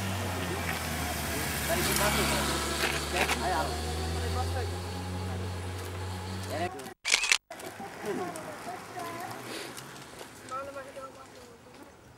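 Motorcycle engine running with a steady low drone for about the first seven seconds, with voices over it. After an abrupt cut, quieter outdoor sound with scattered voices.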